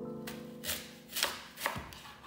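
A kitchen knife slicing through a small green fruit onto a cutting board, with about four sharp cutting strokes. A sustained music chord sounds at the start and fades under the cuts.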